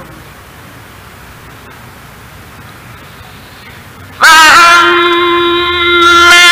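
Faint, even recording hiss. About four seconds in, a man's voice reciting the Qur'an breaks in loudly on one long held note, chanted steadily at a single pitch.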